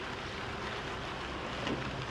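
A minivan pulling up slowly: tyres on a wet gravel road with a steady rush of noise, and a low engine hum coming in near the end.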